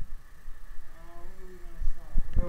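A man's voice making one drawn-out, wordless hum or groan lasting just under a second, starting about a second in and falling slightly in pitch.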